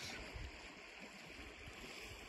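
A small snowmelt creek flowing: a quiet, steady rush of running water.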